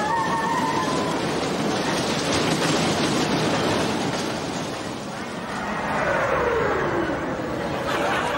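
Loud fairground din: a ride rumbling on its track amid crowd noise. A long falling tone about six seconds in.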